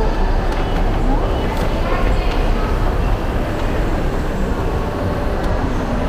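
Moving escalator running with a steady low rumble, under indistinct chatter from people around it.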